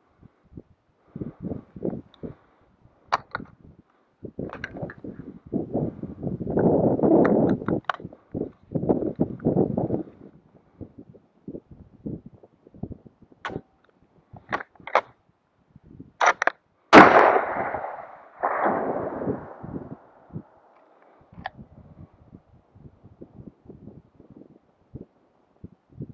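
A single shot from a scoped .308 hunting rifle about two-thirds of the way in, its report rolling back as an echo off the valley slopes for a couple of seconds. Before it, rustling and handling noises as the shooter settles in.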